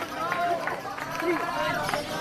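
Caged Fischer's lovebird chattering its ngekek song, a rapid run of short rising and falling chirps, with people talking in the background.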